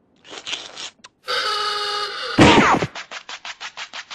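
A quick string of classic cartoon sound effects: a short scrape and a click, a held sound of several steady tones, then a loud crash with a falling pitch, followed by a fast even rattle of about eight taps a second.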